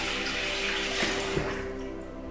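Water running from a tap into a bathroom sink, thinning out near the end, over soft background music.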